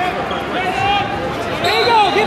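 Coaches and spectators shouting in a large, echoing hall, with no clear words. A thin steady high tone comes in near the end.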